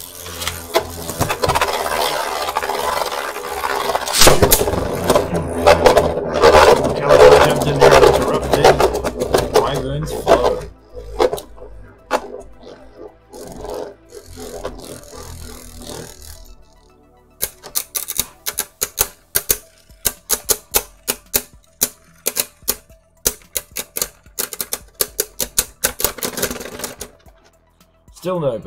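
Two Beyblade Burst spinning tops whirring and grinding around a plastic stadium, clashing loudly through the first ten seconds. After a quieter stretch, rapid sharp clicks come several per second in the second half as the slowing tops knock together.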